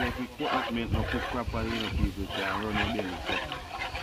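A man's voice, heard as drawn-out, wavering pitched sounds that stop and start, over a low rumble.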